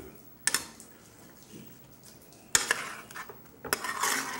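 Metal spoon clinking against a metal cooking pot while vegetables in a little wine are stirred: three sharp clinks, one about half a second in, one past the middle and one near the end, with soft stirring between.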